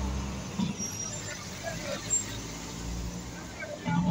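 Road traffic: a nearby motor vehicle's engine running with a low steady hum, which fades early on and swells again near the end.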